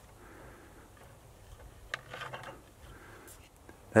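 Faint handling sounds as a plastic peanut butter jar is opened and peanut butter is spread by hand onto the plastic paddles of a 3D-printed mouse trap: a single light click about two seconds in, then soft rustling and scraping.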